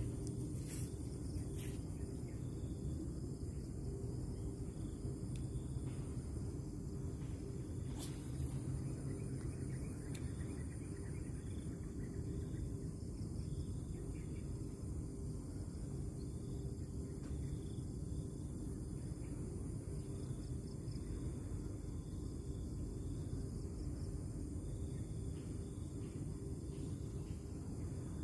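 Outdoor ambience: a steady low rumble with a faint high insect trill and soft chirps repeating about once a second, crickets going by their sound, and one faint click about eight seconds in.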